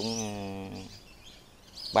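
Birds chirping in the background, short high calls, under a man's long drawn-out word that fades out about a second in, leaving a brief quieter gap.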